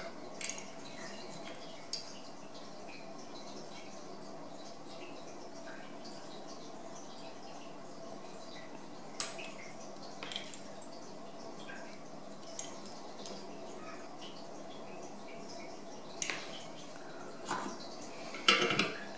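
Small sharp clicks and taps, about six of them spread through, from hands handling wires in a metal helping-hands clamp while soldering LED leads together, over a faint steady hum.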